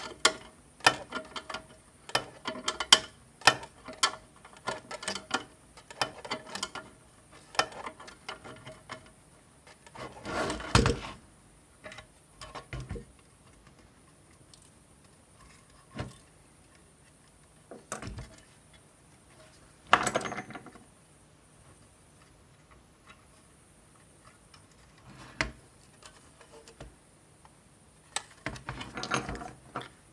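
Ratcheting spanner clicking about twice a second as it tightens the nut on a terminal post in a metal power supply case. After about nine seconds the clicking stops, leaving scattered knocks and clunks as the metal case is handled.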